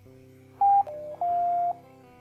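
Completion sound of QGIS's Semi-Automatic Classification Plugin: three electronic beeps, a high one, a lower softer one, then a middle one held about half a second, signalling that the band conversion to reflectance has finished. Soft guitar music runs underneath.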